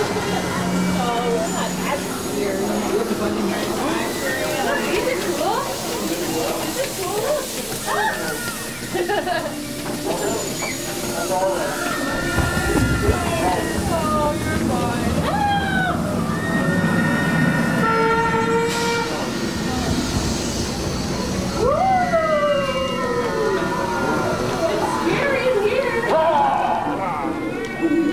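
Haunted-house din: voices and wailing cries that swoop up and down in pitch, over a low steady hum.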